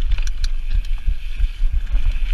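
Mountain bike descending a gravel downhill trail at speed, heard from a head-mounted action camera. Wind buffets the microphone in a heavy rumble over a steady hiss of tyres on loose gravel, with irregular sharp clicks and rattles from the bike over bumps.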